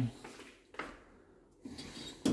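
Inside a passenger lift car: a single clunk just under a second in, then a faint low hum as the car travels.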